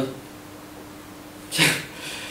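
A pause in a man's spoken introduction, filled by a faint, steady low hum of room tone; his voice comes back briefly near the end.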